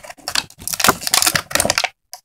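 Small plastic toys and packaging being handled close to the microphone, making a quick, irregular run of clicks and crackles.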